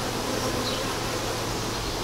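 A wild honeybee colony on exposed comb buzzing steadily.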